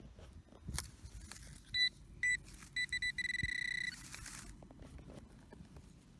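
Handheld metal-detecting pinpointer beeping: a few short high beeps coming quicker, then a steady tone for most of a second, the signal that it is right over metal in the hole. Brief rustles of handling around it.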